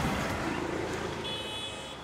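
Outdoor street background noise, a steady traffic-like hum that slowly fades. A faint high steady tone joins it about a second and a half in.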